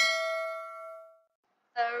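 A bell-like ding sound effect, the notification-bell chime of a subscribe animation, ringing out with several tones and dying away over about a second. A woman starts speaking near the end.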